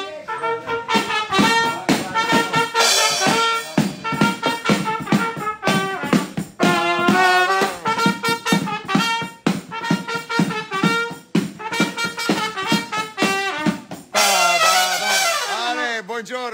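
A small band playing live: a brass horn plays held melody notes over a drum kit keeping a steady beat. Cymbals ring out loudly near the end.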